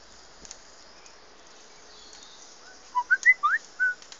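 A quick run of about six clear whistled notes near the end, short and mostly rising in pitch, over a steady background hiss with faint ticks.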